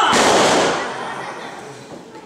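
A wrestler slammed onto the wrestling ring. It makes one loud bang right at the start that echoes and fades over about a second.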